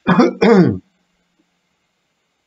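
A man clearing his throat: two quick, voiced cough-like bursts back to back, lasting under a second.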